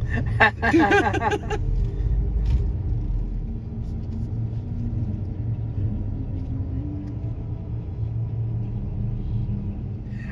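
Steady low rumble inside a car's cabin as the car idles and creeps forward. A brief burst of a person's voice comes about half a second in and is the loudest sound.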